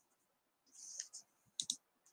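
Faint computer mouse clicks: a short cluster of soft clicks a little under a second in, then one sharper click about a second and a half in.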